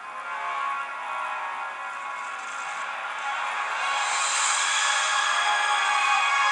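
Music from a live TV broadcast played through a phone's small speaker: held synth tones that build steadily louder and brighter.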